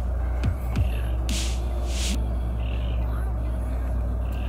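Steady low hum, with two short hissing bursts about a second and a half and two seconds in.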